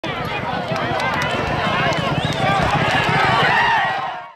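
Spectators shouting and cheering, many voices at once, over the drumming hooves of two racehorses galloping on a dirt track.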